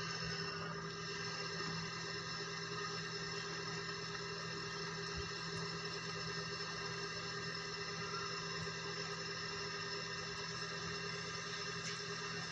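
A steady machine drone holding several fixed tones, unchanging in pitch and level, as from a motor or engine running at constant speed.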